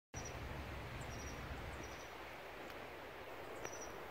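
Steady outdoor background noise with a few short, high-pitched bird chirps.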